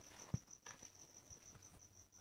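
Faint high-pitched chirping, evenly pulsed about six times a second, from an insect, in an otherwise near-silent pause. One soft knock comes about a third of a second in.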